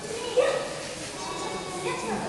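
Several people's voices in background chatter, with one short, loud voice-like call about half a second in.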